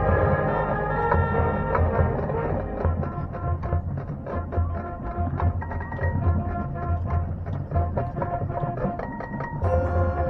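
High school marching band playing its field show. Held chords at the start thin into a softer passage carried by the front-ensemble percussion, with repeated low drum strikes and short pitched notes, and the full band comes back in louder near the end.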